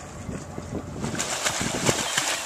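Wind buffeting the microphone over water sounds at an anchorage, a rough noise that turns louder and choppier about a second in.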